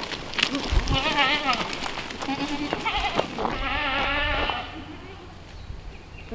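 Goats bleating as the herd is let out of its pen and runs out, several wavering bleats, the longest about a second long just before the middle, over scattered clicks of hooves.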